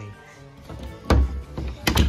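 Dull thunks of handling or bumping: one about a second in and a quick pair near the end, over faint background music.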